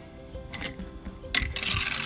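Toy car clacking onto a ramp track about a second and a half in, then rattling as it rolls down.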